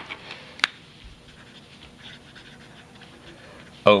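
Felt-tip marker writing on paper in short, faint scratchy strokes, after a single short click about half a second in.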